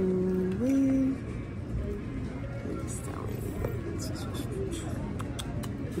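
A voice holds a sung note, then steps up to a higher one about half a second in, ending after about a second. Then comes a quieter low background hum with a few faint clicks.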